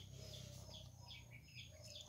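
Faint bird chirping: short falling chirps repeated about three times a second.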